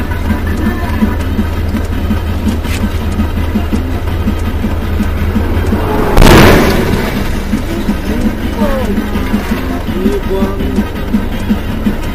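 A car's collision: one loud crash about six seconds in, lasting about half a second, over the steady drone of the engine and road noise inside the cabin, with music playing.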